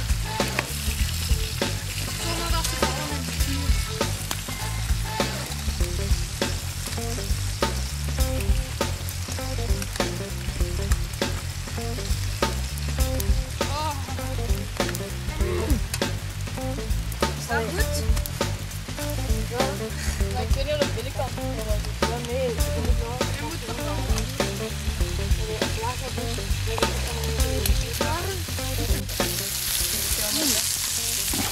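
Wood campfire crackling, with many irregular sharp pops and snaps over a low rumble.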